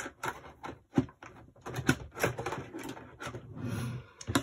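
Craft supplies and scissors being handled and set down on a hard tabletop in a search for scissors: scattered taps and clicks, with two sharper knocks about a second apart near the middle.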